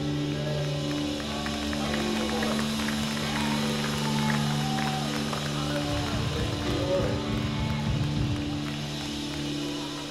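A church worship band's keyboard holding sustained chords, with voices from the congregation rising over it in the middle and a low rumble a little past halfway.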